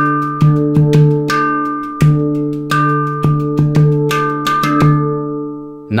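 Steel handpan by Victor Levinson (D minor scale) played with bare hands in a backbeat groove. Deep ringing strokes on the central ding note alternate with lighter, sharper tak strikes, in a pattern that repeats about every two seconds. The playing stops just before the end.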